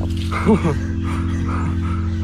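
A man's short startled yelp, rising and falling in pitch, about half a second in, over background music holding steady low notes.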